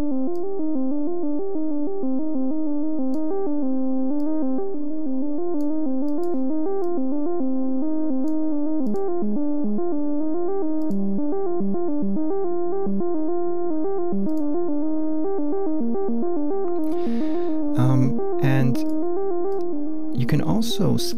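Diatonic step-sequencer melody from a VCV Rack software modular patch, a filtered VCO stepping through quantized scale notes several times a second. Near the end there is a short noisy burst and a few lower notes.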